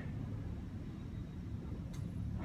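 Low, steady rumble of background noise in an underground car park, with a faint tick near the end.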